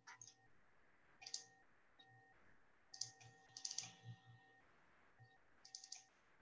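Faint, scattered clicks of computer keys, a few single strokes with a quicker run of several about three and a half seconds in.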